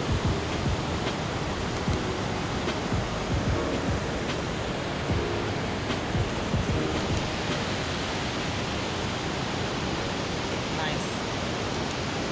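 Steady rushing of a white-water river's rapids far below, heard as an even, unbroken noise, with low rumbles of wind on the microphone.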